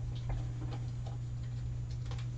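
A few faint, light ticks and clicks over a steady low hum, from small craft supplies being handled on a desk.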